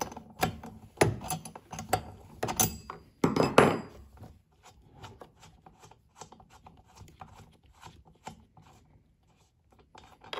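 Steel tube socket spanner clinking and knocking on the spark plug of a STIHL BG 56 blower as the old plug is undone. A cluster of knocks comes in the first four seconds, then only faint handling ticks.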